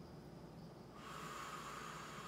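A person taking a slow, deep breath during a chest stretch, a soft airy hiss that sets in about a second in and carries on.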